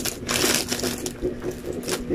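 Clear plastic bag crinkling as it is handled, in irregular bursts, loudest about half a second in and again near the end.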